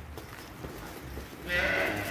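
A cow mooing once, starting about one and a half seconds in.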